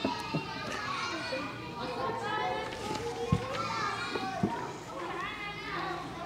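Faint chatter of several children talking quietly among themselves, away from the microphone, with two soft knocks in the middle.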